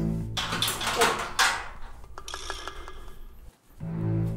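Background music opening on a deep held note. It is followed by two loud, noisy clattering bursts in the first second and a half, then a few light clicks.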